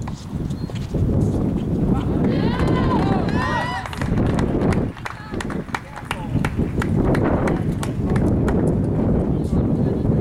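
Outdoor noise with a rumble on the microphone, a distant voice calling about two to four seconds in, and scattered sharp clicks.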